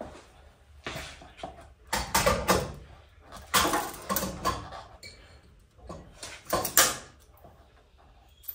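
Irregular metal clanks, knocks and rattles of tools and parts being handled in a truck's engine bay, a handful of sharp clatters a second or so apart.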